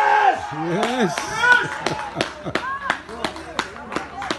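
Spectators at a football match shouting in excitement, then a few people clapping in sharp, irregular claps, several a second, from about a second in.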